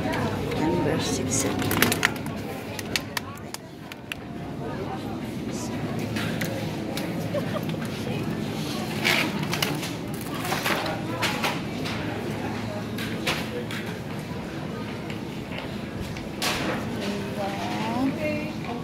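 Supermarket ambience: a background murmur of voices with scattered clicks and rattles of a shopping cart being pushed and loaded.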